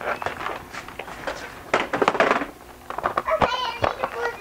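Children's voices, with a series of short plastic clicks and knocks as a Nerf blaster is set down on a table and another is picked up.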